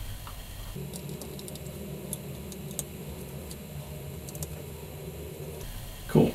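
Small scattered clicks and ticks of a screwdriver and tiny screws being handled as screws are taken out of an SJ4000 action camera, over a low steady hum.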